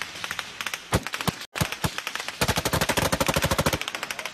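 Rifle gunfire: a few scattered shots, then past the middle a rapid burst of automatic fire, many shots a second for about a second and a half.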